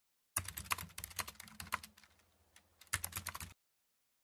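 Keyboard typing sound effect: a quick run of key clicks that thins out, then a second short burst of clicks near the end, cutting off abruptly.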